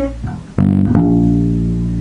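Electric bass guitar played solo: a held note dies away, then a single new note is plucked about half a second in and rings on steadily, one note of a G pentatonic scale played one note at a time.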